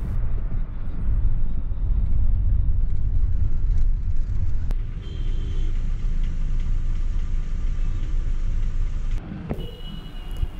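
Steady low rumble of engine and tyre noise heard inside the cabin of a moving car, easing briefly near the end.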